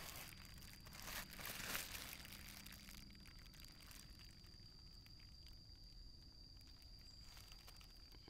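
Plastic bubble wrap crinkling in two short bursts within the first two seconds as it is handled under the bicycle frame.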